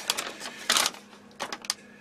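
Paper rustling as sheets are handled and moved, with one louder rustle under a second in and a few short crackles about a second and a half in.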